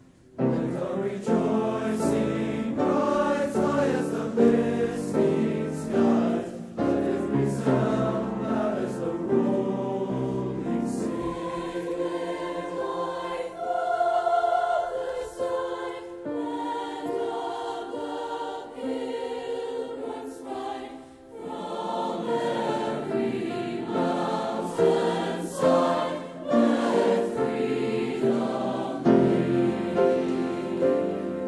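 A large mixed high-school honor choir singing a choral piece in full harmony, starting just after a momentary silence. Midway the low end drops away for about ten seconds, leaving the higher voices, before the full sound returns.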